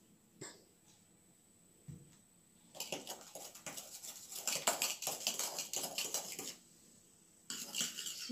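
A metal spoon stirring briskly in a glass of lemon juice and baking soda, a rapid run of small clinks and rattles against the glass, in two spells with a short pause between them near the end. A soft knock about two seconds in.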